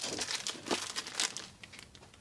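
Thin clear plastic packaging around a children's T-shirt being picked up and handled, crinkling and crackling, loudest in the first second or so and easing off toward the end.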